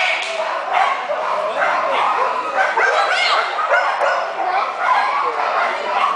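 Dogs yipping and barking in quick, overlapping high calls, almost without pause, mixed with people's voices.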